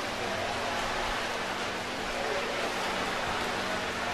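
Swimming-pool ambience: a steady, even rush of water-like noise with a faint low hum beneath it.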